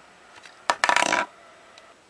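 Small hard plastic toy parts clicking and clattering together: one sharp click and then a short rattle lasting about half a second.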